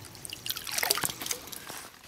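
Pond water trickling and splashing around a submerged PVC pipe assembly being handled, a quick run of small drips and splashes starting about half a second in and fading near the end.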